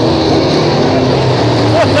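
Several 602 Sportsman dirt-track race cars running together on the oval, their GM 602 crate V8 engines droning steadily as the pack goes around.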